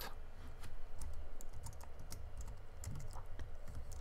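Typing on a computer keyboard: irregular key clicks in short runs of a few strokes.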